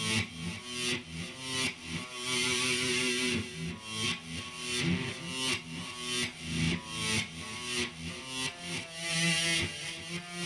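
Electric guitar played through distortion: a riff of picked notes in quick succession, with a couple of longer held chords.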